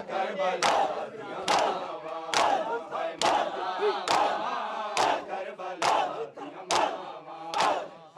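A large crowd of men beating their chests in unison (matam): one loud, sharp slap of many hands together, a little under once a second, nine in all. Between the slaps, the mass of voices calls out.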